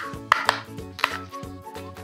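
A handheld hole punch clicking a few times as it punches holes through the edge of folded red card, over soft background music.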